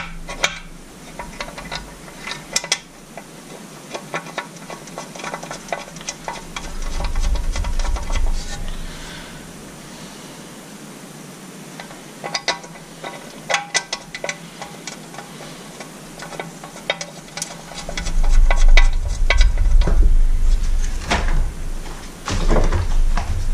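Small metal clicks, ticks and scrapes of bolts and a hand tool being fitted into the hardware mounts of an outboard motor's top cowl, with heavier bumps and rumbling from handling the cowl in the middle and over the last few seconds.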